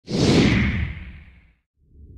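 Whoosh sound effect for a logo intro: a loud swish that starts at once and fades out over about a second and a half. After a short silence, a low rumble begins just before the end.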